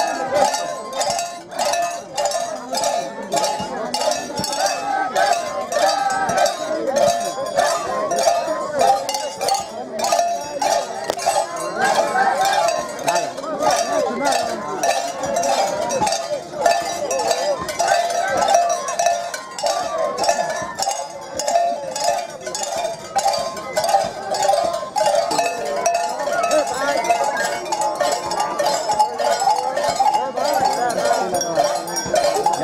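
Steady rhythmic metallic clinking, about three strikes a second, over the continuous high voices of a crowd.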